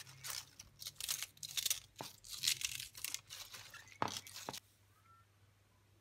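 Knife cutting through crisp raw cabbage leaves held in the hand, a quick irregular series of crunching cuts that stops about four and a half seconds in.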